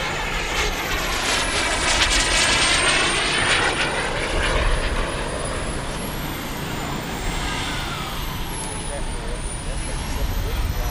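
Radio-controlled model jet flying past, its thin, very high turbine whine sliding up and down in pitch over a steady rush of jet noise, loudest about two to four seconds in.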